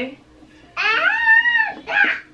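A toddler's high-pitched vocal squeal, about a second long, its pitch rising then falling, starting just under a second in.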